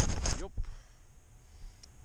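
A sharp knock as a handheld camera bumps against a winter jacket, with a fainter click about half a second later.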